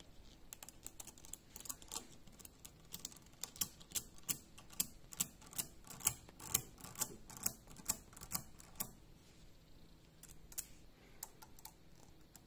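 Small magnetic balls clicking as they snap onto a magnetic-ball sculpture, a run of sharp little clicks. The clicks come thick and loud through the middle and thin out after about nine seconds.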